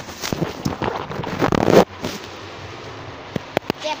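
Phone microphone rubbing and bumping against clothing and hands as the phone is handled. The scraping, crackling noise is loudest a little under two seconds in and cuts off suddenly. A few sharp clicks follow near the end.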